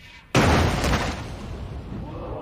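Animated sound effect of a sumo wrestler's body slamming into the ring: one sudden heavy boom about a third of a second in, fading out over a second or so.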